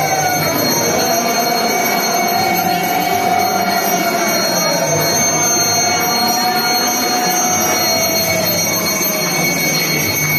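Conch shells blown in long, wavering blasts whose pitch sags now and then, over a continuous high ringing and dense crowd noise during a lamp offering (arati).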